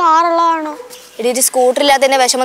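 Dialogue: a voice drags out one long, slowly falling vowel, then goes back to ordinary speech about a second later.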